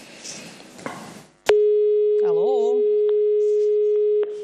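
Telephone line tone over the studio's call-in line: after about a second and a half a loud, steady single tone starts suddenly and holds. It is the sign that the caller has hung up and the line is dead.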